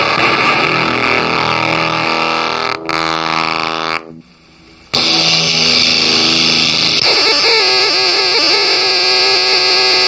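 Rosewater fuzz pedal with its feedback loop engaged, self-oscillating into a harsh, noisy fuzz that settles into held pitched drones. It cuts out for about a second near four seconds in, then returns loud. From about seven seconds, as the knobs are turned, the tones warble and wobble in pitch.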